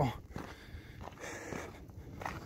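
Faint footsteps on gravel, a few soft steps.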